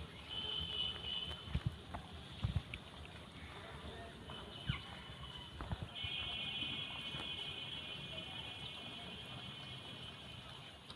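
A cat chewing on a whole raw fish, with scattered soft knocks and thumps in the first half. A steady high buzz comes in briefly near the start and again from about six seconds in.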